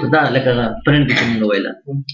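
A man speaking: continuous narration with a short pause near the end.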